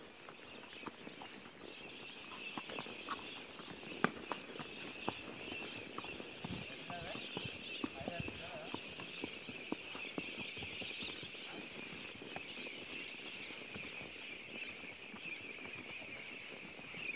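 A horse's hooves on a dirt trail, heard from the saddle as irregular soft knocks and clicks, with faint distant voices and a steady high-pitched hiss in the background.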